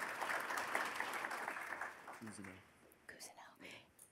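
Light audience applause that fades out after about two seconds, followed by faint murmured voices.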